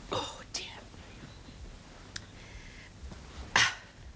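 A man's breathy mouth and breath sounds as he drinks from a glass: short hissy breaths and sips, with a louder breathy exhale near the end.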